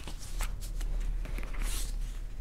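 Paper banknotes and a clear plastic zip envelope rustling and crinkling as they are handled, in a string of short crisp sounds with a brief swish near the end.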